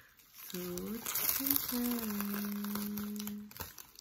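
Bubble wrap and a plastic sleeve crinkling and crackling as a phone case is pulled out of its packaging, from about a second in until shortly before the end, under a long drawn-out spoken 'so'.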